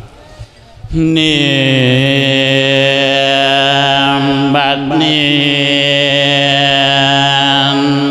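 A Thai Buddhist monk's voice chanting a sermon in the sung Isan 'lae' style: a long held note starts about a second in, breaks off briefly near the middle, then a second long held note follows.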